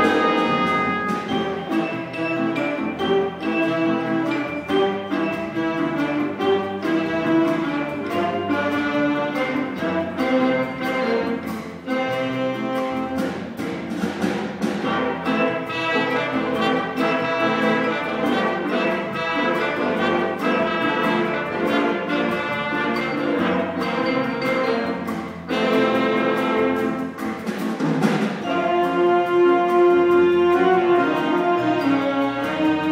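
A student jazz big band playing an ensemble passage: saxophone and brass sections over piano, upright bass, guitar, drums and vibraphone.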